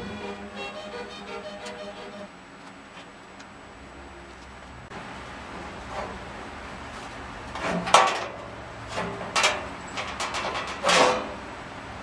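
Background music fading out in the first couple of seconds, then a sheet-metal body panel of a go-kart being worked loose and pulled off its frame: a run of sharp metal clunks and scrapes, loudest about eight and eleven seconds in.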